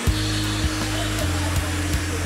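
Handheld hair dryer blowing under a TV music cue of deep sustained bass notes that start abruptly, shift a little past a second in, and carry a few soft percussive hits.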